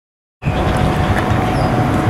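Outdoor station-side ambience, a steady, loud low rumble with traffic-like noise, cutting in abruptly about half a second in after dead silence.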